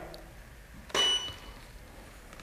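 A camera and studio flashes firing about a second in: a sharp click, then a short high beep from the flash units.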